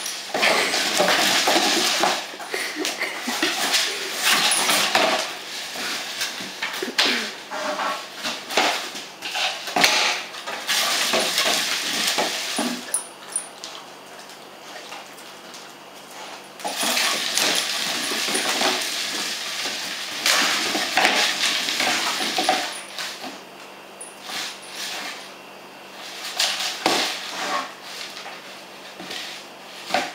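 A dog's hollow tube toy rolling, clattering and knocking across a lino floor as a German Shepherd noses and paws it, with sharp clicks throughout. The clatter comes in two long spells with a quieter stretch between them.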